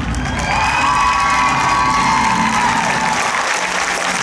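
Audience applauding and cheering, with high shouts held over the clapping from about half a second to two and a half seconds in.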